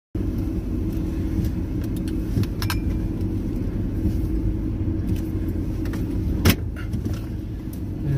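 Car engine idling, heard inside the cabin as a steady low rumble. A few small rattles come through, and there is one sharp click late on.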